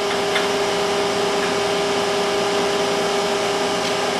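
Steady electric hum of capsule-filling machinery running, with two level tones held throughout, and a couple of faint clicks as the metal capsule rings are handled.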